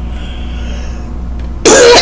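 A single short cough about a second and a half in, the loudest thing here, over a steady low hum.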